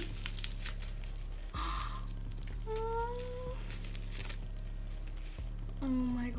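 Plastic bubble-wrap packaging crinkling and crackling as it is unwrapped by hand, with a short louder rustle about a second and a half in.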